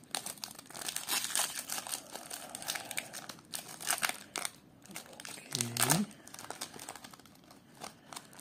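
Foil wrapper of a Pokémon TCG booster pack being torn open and crinkled by hand: a dense, uneven run of sharp crinkles and rips as the cards are worked out of the pack.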